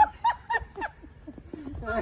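A person laughing in a string of short, high-pitched bursts through the first second, then a quieter moment, with more laughter and voice starting near the end.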